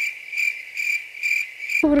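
Cricket chirping sound effect: a high, steady chirping that pulses about three times a second and cuts off abruptly near the end.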